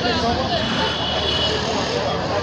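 Several people talking in the background, with no words made out, over a steady low rumble.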